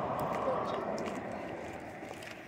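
Low background hubbub with faint, indistinct voices, fading slightly, and a few light ticks.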